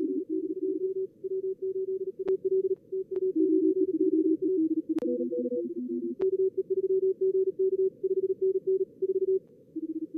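Simulated contest Morse code (CW) from a logging program's practice mode: several fast Morse signals at slightly different pitches overlapping, heard through a narrow receiver filter over faint band hiss. A few sharp clicks cut in during the first several seconds.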